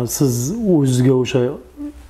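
A man speaking in a steady, low voice, with a sharp hissing consonant at the start.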